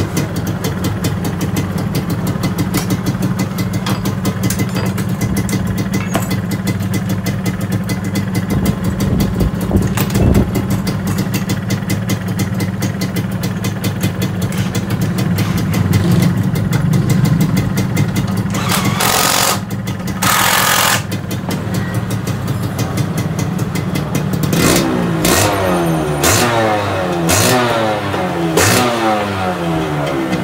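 Suzuki RGV 120 two-stroke single-cylinder engine idling steadily, with two short bursts of hiss about two-thirds of the way through. Near the end it is revved several times in quick succession, its pitch rising and falling with each blip.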